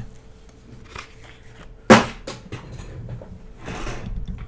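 Something dropped on a desk: one sharp, loud knock about two seconds in, among lighter knocks and rattles of objects being moved about.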